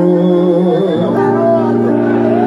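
Live samba-enredo music from a samba school's band and singer, sustained notes that shift to a new chord about a second in.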